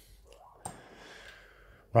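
A quiet pause between sentences: a man's faint breath, then a single small click about two-thirds of a second in, over low room noise.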